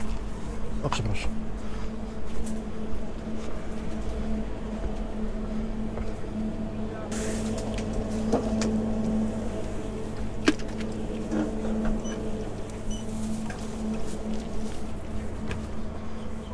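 Convenience-store ambience: a steady electrical hum from the shop's refrigerated coolers and air conditioning, with faint background voices. A few short clicks and clinks come as drink cans are handled on a cooler shelf, the sharpest about ten seconds in.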